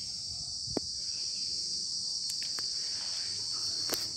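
Steady high-pitched chirring of insects, one unbroken drone, with a single small click just under a second in.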